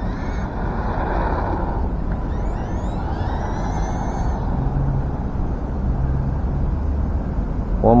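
Steady low rumble of wind on the microphone in the open. Over it, about a second in and again in the middle, come faint high rising whines from the distant RC buggy's brushed electric motor.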